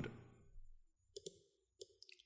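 Faint clicks of a computer mouse and keyboard: a quick double click a little after a second in, then another click near the end, as a search box is opened on the screen and a name typed.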